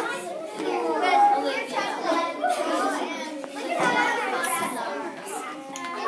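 Many children talking and chattering at once in a classroom, overlapping voices with no single voice standing out.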